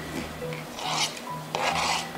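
A kitchen knife on a plastic cutting board, dicing canned peach slices and then pushing the pieces across the board into a glass bowl: two scrapes, one about a second in and one near the end.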